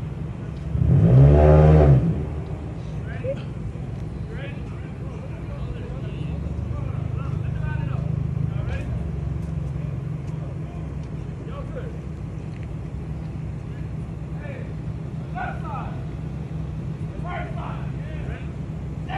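Car engines idling side by side while staged for a street race, with one engine blipped hard about a second in, its pitch rising then falling. The low idle rumble carries on and swells briefly in the middle, with faint voices in the background.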